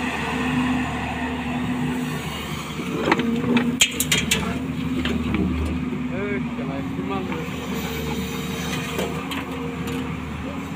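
JCB excavator's diesel engine running steadily under hydraulic load as the bucket swings over and dumps wet sand into a steel dumper body. A cluster of sharp clanks comes about three to four and a half seconds in.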